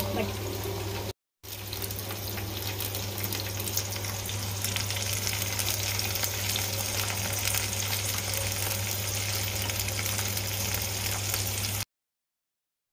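Oil sizzling steadily in a steel frying pan as wet, soaked mung and moth beans cook with potato and onion, over a constant low hum. The sound cuts out briefly about a second in, then carries on unchanged.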